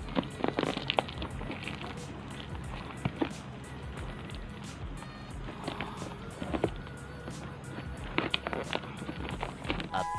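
Background music, with scattered crackles and rips of brown paper and tape as a wrapped package is torn open by hand.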